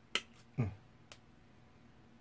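Sharp clicks of small pliers against steel hook wire as the wire is bent into a loop. There is a loud click just after the start and a fainter one about a second in.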